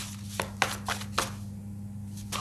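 Tarot cards being shuffled and handled: four or five sharp clicks of card against card in the first second and a half.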